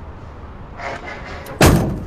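A Dongfeng truck's cab door slammed shut once, loud and sudden, about one and a half seconds in, after a short rustle.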